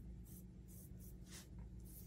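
A paintbrush stroking paint onto a craft-foam leaf: a few short, faint brushing strokes over a low steady hum.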